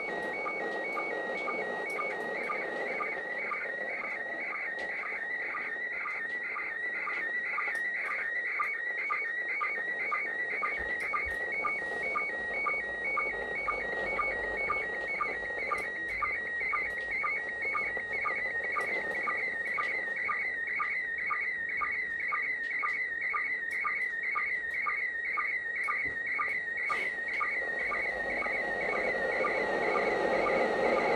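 Slow-scan television (SSTV) picture transmission from the International Space Station, received on the 145.800 MHz FM downlink. A warbling, whistling tone runs steadily, with a short lower sync blip about twice a second that starts each new scan line of the picture, over a hiss of FM noise.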